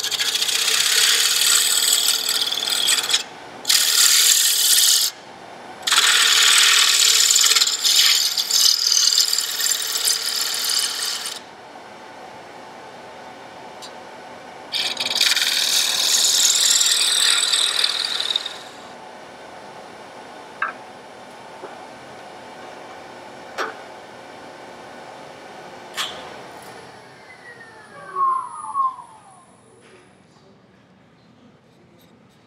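Wood lathe turning a walnut jar lid while a hand-held turning tool cuts across its face, giving four long bursts of scraping shaving noise. In the pauses and in the second half the lathe runs on with a steady hum, broken by a few light taps.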